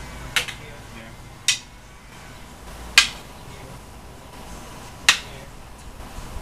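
Eskrima sticks clacking together four times as strikes are blocked in a stick-fighting drill: sharp wooden knocks at uneven intervals, the loudest about halfway through.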